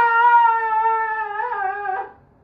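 A man's exaggerated crying wail: one long, high, held note that dips slightly in pitch near the end.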